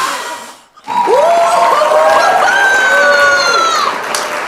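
A hard puff of breath blowing out a row of candles, then, about a second in, a woman's long, loud, high-pitched cry of triumph.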